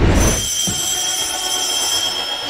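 A short low rumble, then a steady high-pitched tone held to the end, like a buzzer or alarm sound effect.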